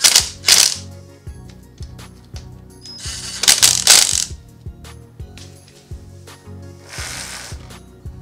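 Cordless power driver running in short bursts as it drives in the bolts of a plastic rear brake caliper guard on a dirt bike: two quick bursts at the start, a longer run about three seconds in and a fainter one near the end, over background music.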